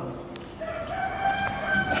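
A rooster crowing: one long call that starts about half a second in and holds a nearly level pitch for over a second.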